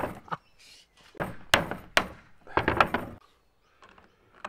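Hammer striking a chisel that is cutting into the lid of a steel tin can: sharp metallic blows in three bunches, the last about three seconds in.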